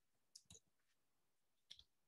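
Near silence, broken by a few faint, brief clicks: two about half a second in and a couple near the end.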